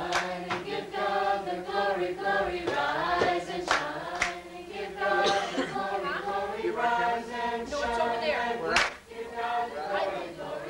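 A group of voices singing together unaccompanied, with a few scattered hand claps.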